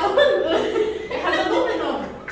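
People chuckling and laughing, mixed with talk.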